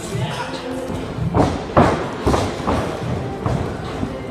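A run of heavy thuds from wrestlers' feet and bodies striking a wrestling ring mat during running drills, about five of them in the second half. Background music and voices play underneath.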